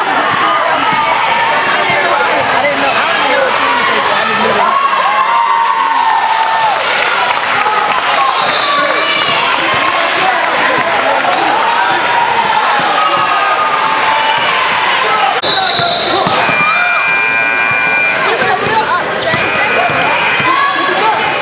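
A basketball bouncing on a hardwood gym floor as players dribble, amid voices and crowd noise in a reverberant gym. A held high tone sounds for about two seconds near the end.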